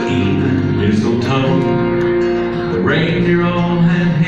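Live bluegrass band music: an upright bass plucked in rhythm under a man singing long held notes.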